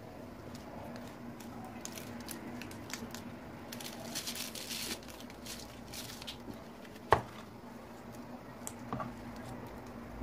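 A knife cutting the leafy crown off a whole pineapple on a plastic cutting board: scratchy, crackling rasps of the blade through the tough rind and leaves, with one sharp knock about seven seconds in. A steady low hum runs underneath.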